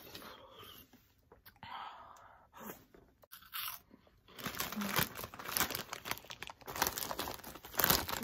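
A plastic snack-puff bag crinkling loudly as it is handled, filling the second half with dense crackles. Near the start there are quieter sounds of drinking from a large plastic juice bottle.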